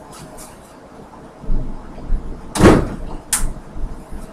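Handling and movement noise at a lab bench: a low rumble, then a brief rustling thump about two and a half seconds in and a short click shortly after.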